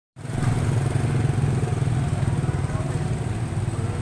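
A small engine running steadily at idle, a low even rumble, with faint voices behind it.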